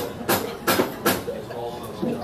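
People laughing in a few short, breathy bursts about half a second apart, with a little voiced laughter after them.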